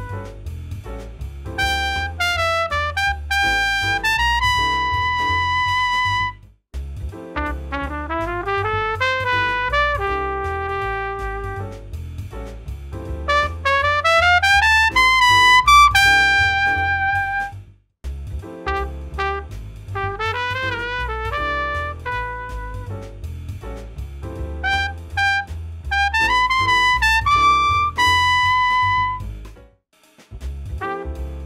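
Jazz lead trumpet playing ii–V–I phrases over a backing track: quick runs that sweep upward into held high notes, in three phrases split by two brief breaks, about a fifth and about three fifths of the way in.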